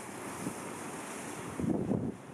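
Wind buffeting the microphone in irregular low gusts over a steady rushing hiss, with the strongest gust near the end.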